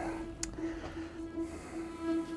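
Quiet background music with a held, gently pulsing note, and one faint click about half a second in.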